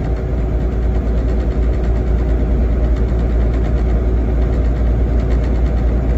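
Steady low rumble with a noisy hiss above it, like a vehicle's engine running.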